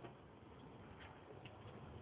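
Near silence inside a car cabin: the faint low rumble of the car driving on a snow-covered road, with a few light ticks.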